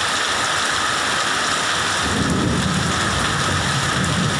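Heavy rain pouring steadily onto a waterlogged road. About halfway through, a low rumble comes in and carries on underneath the rain.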